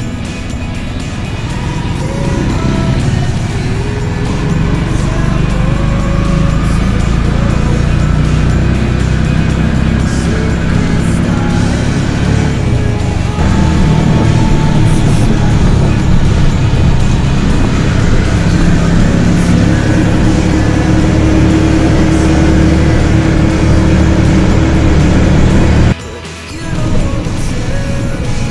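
Background music over the steady engine and road noise of a motorcycle tricycle (a motorcycle with a sidecar cab) riding along a road. A low engine rumble runs under a melody.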